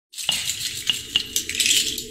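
Bright rattling shimmer with several sharp clinks that ring briefly, over a low steady drone, as a music intro starts.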